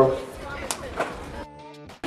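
Skateboard knocking on concrete and a steel rail: a couple of sharp clacks about a second in, over a low background haze.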